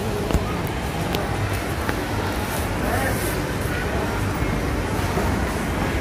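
Steady indoor background noise with a low hum, and a single short click about a third of a second in.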